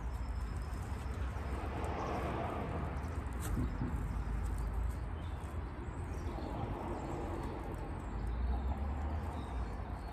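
Wind buffeting the microphone outdoors: a steady, uneven low rumble, with a faint click about three and a half seconds in.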